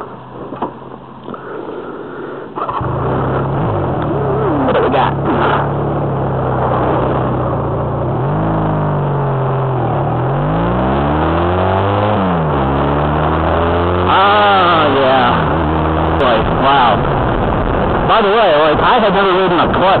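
Honda Rebel 250 motorcycle engine comes on suddenly about three seconds in and runs steadily. From about eight seconds in, the revs rise and fall several times as the bike pulls away and gathers speed.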